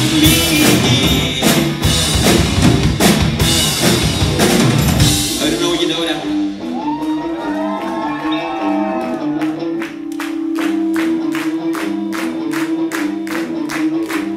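A rock band plays full out with drum kit, electric guitars and vocals, then drops out about five seconds in, leaving one held note. From about ten seconds the audience claps along in a steady beat, about two claps a second.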